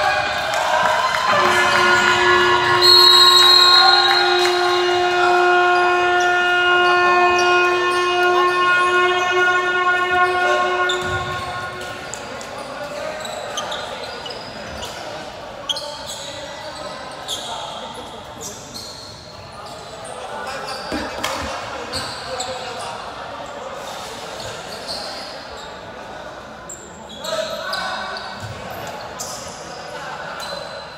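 A gym's electronic game horn sounds one long steady tone for about ten seconds, marking a stoppage in play. After it, voices and a basketball bouncing echo through the hall.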